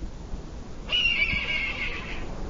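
A single high, wavering animal call starting about a second in and lasting about a second, over a steady low background rumble.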